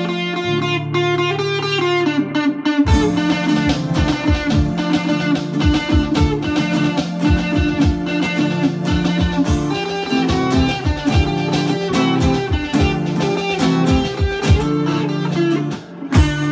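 Live instrumental band music: an electric guitar playing the lead melody over keyboard, drum-pad beats and a strummed rhythm guitar. The drums drop out for about the first two and a half seconds, then come back in with a steady beat.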